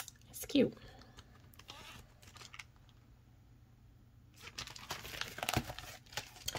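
Crinkling and soft clicks of a clear plastic budget binder and paper bills being handled, with a sharp click right at the start and another near the end.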